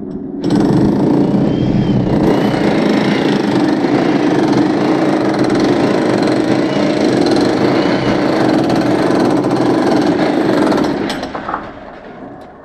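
Electric demolition hammer with a chisel bit breaking into a brick-and-plaster wall, running continuously at full power. It picks up again about half a second in after a brief let-up and stops about a second before the end.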